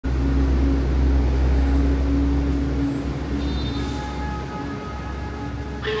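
2007 Hyundai Elevator SSVF5 machine-room-less passenger lift. A low rumble and hum for about three seconds stops, then the lift gives electronic chime tones while its doors work. Right at the end its recorded Korean voice begins announcing "going up".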